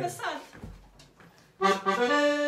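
A button accordion strikes up near the end: a short chord, then a held chord of steady notes.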